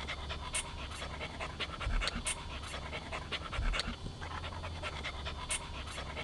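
A border collie panting in quick short breaths, over a low steady rumble.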